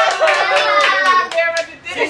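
A small group of people clapping their hands, with voices cheering over it. The clapping stops just before the end.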